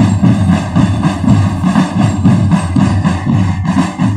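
Military marching drum band playing, with a steady, rapid beat of bass drums under sustained higher tones.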